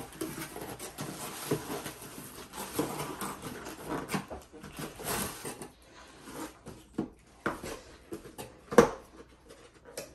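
Cardboard shipping box being torn open and handled, with irregular scraping and rustling of cardboard and packaging and a few sharp knocks, the loudest near the end.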